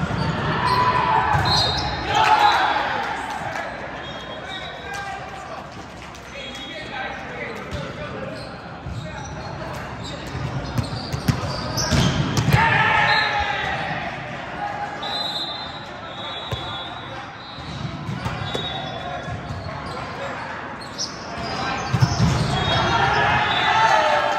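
Indoor volleyball play in a large gym: the ball struck and bouncing on the court, with short sharp squeaks, and players shouting in swells near the start, in the middle and near the end.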